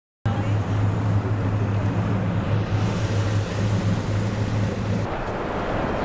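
Motor vehicle engine running steadily at low speed, a low hum over road and outdoor noise, which drops away about five seconds in.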